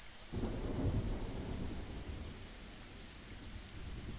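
A quiet rumble of thunder that starts suddenly about a third of a second in and fades over the next couple of seconds, over a steady hiss of rain: an atmospheric sound effect.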